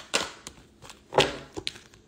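A deck of tarot cards being handled in the hands: a few short slaps and flicks of the cards, the loudest a little over a second in.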